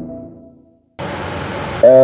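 An intro jingle's held ringing chord dies away in the first second, followed by a brief silence. Then steady room hiss from a microphone cuts in, and a man's voice starts just before the end.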